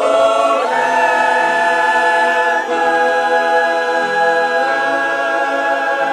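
Youth choir singing in parts, holding long sustained chords. A new phrase starts at once, and the harmony shifts about a second in and again near three seconds.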